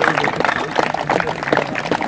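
A small crowd applauding outdoors, a fast, irregular patter of many hands clapping, with a few voices mixed in.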